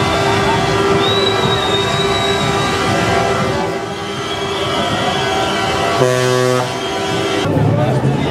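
Truck air horns sounding in long held blasts, several pitches overlapping, with a separate deeper horn blast about six seconds in. Voices can be heard underneath.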